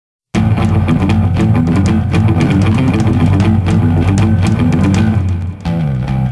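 Instrumental intro of a rock song, led by guitar with drums, starting suddenly just after the start and breaking off briefly near the end.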